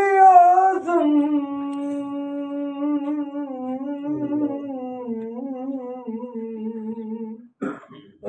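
A single unaccompanied voice holds one long note of a Punjabi naat. The note sinks slowly in pitch in a few steps, wavers slightly, and breaks off just before the end.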